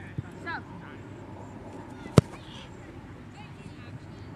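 A football placekicked off a holder: one sharp, loud thud of the kicker's foot striking the ball about two seconds in. Faint voices can be heard in the background.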